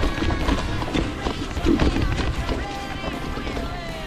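Background music over the rattle, knocks and low rumble of a mountain bike descending a rough, rocky hiking trail.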